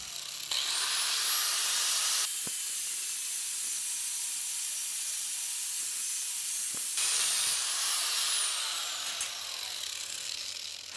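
Electric angle grinder with a cut-off wheel spinning up about half a second in, then cutting through a steel flat bar with a steady high hiss and thin whine. Over the last couple of seconds the whine falls as the grinder winds down.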